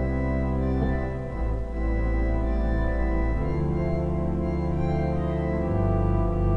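Pipe organ playing sustained jazz chords over a C major progression, with a melody improvised from the first five notes of the scale; the bass note changes about a second in, again midway and near the end.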